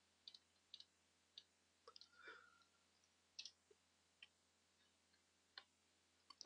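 Near silence, broken by about a dozen faint, irregular clicks of a computer keyboard and mouse as a short web address is typed, with a brief faint tone just after two seconds.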